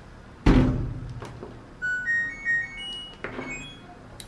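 A heavy thump about half a second in, then a top-loading washing machine's control panel playing its short start-up melody of about six high electronic beeps as the Start button is pressed to begin a wash cycle.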